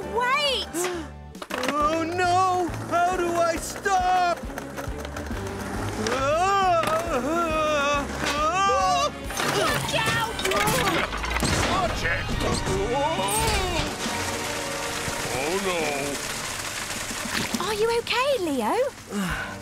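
Cartoon soundtrack: lively music with vocal-like melodic sounds, then a noisy crash with clatter and splatter from about ten to fourteen seconds in.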